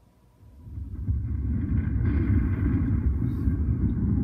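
Deep rumble from a movie trailer's soundtrack, swelling up about half a second in and then holding steady.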